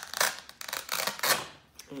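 Hook-and-loop (Velcro) fastener tearing apart as a picture card is peeled off a choice board: a crackly rasp lasting about a second and a half.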